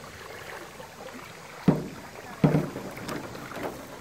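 Kayak paddling: two short, dull knocks under a second apart over a faint steady rush of water and air.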